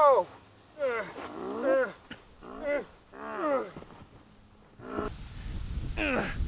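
A man's voice giving several loud, drawn-out cries that fall in pitch over the first four seconds. From about five seconds a low rumbling noise takes over.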